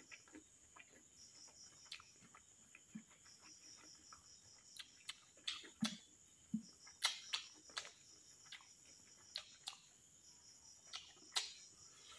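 Chewing and mouth clicks of a man eating rice and meat curry with his fingers, loudest around the middle and near the end. Behind them, crickets chirp in high, steady trills that come and go.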